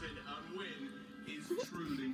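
Television broadcast playing through the set's speakers: voices over background music.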